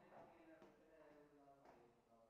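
Near silence, with a faint voice speaking quietly and a couple of faint taps.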